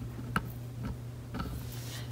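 A few light, sharp taps, about half a second apart, as a cat bats and paws at a small plush feathered cat toy.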